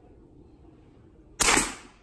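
A single shot from a Sumatra 500cc pre-charged pneumatic air rifle about a second and a half in: one sharp crack that dies away within half a second.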